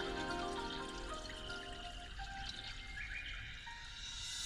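A Chinese song played through a 2017 Nissan X-Trail's factory speakers, fitted with added ribbon tweeters and an active subwoofer, heard inside the cabin. A soft instrumental passage of a few held notes gradually fades lower.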